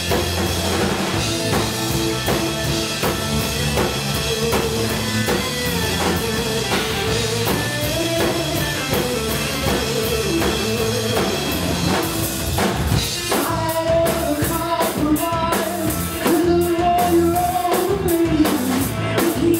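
Live rock band playing through a club PA: electric guitar, bass guitar and drum kit, with steady drumming throughout. The band grows louder about three-quarters of the way through.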